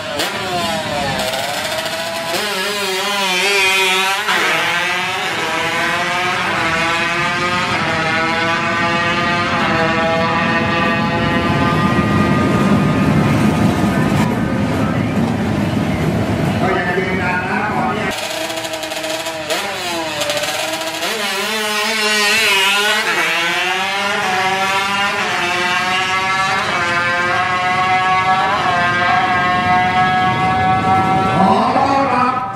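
Tuned Honda Wave drag bikes, their small single-cylinder engines revving hard down the strip. The pitch climbs and drops at each gear change, over and over. A second run's rising sweeps begin a little past the middle.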